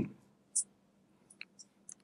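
A pause in a man's speech at a close microphone. It opens with the tail of a 'hmm', then a few faint, short clicks follow, over a faint steady low hum.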